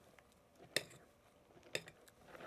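A silicone spatula folding whipped cream into a syrupy mixture in a glass mixing bowl: faint soft working sounds, with two light clicks of the spatula against the glass about a second apart.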